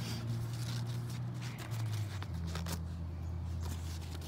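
Paper pamphlet rustling and ticking as it is handled and opened, over a low steady drone that drops in pitch a little after two seconds in.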